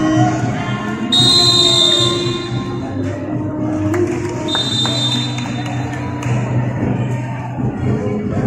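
Music playing, with two long, high whistle blasts cutting through it, the first about a second in and the louder of the two, the second about four and a half seconds in.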